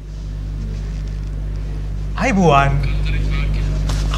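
A steady low hum runs throughout, with a short spoken utterance about two seconds in.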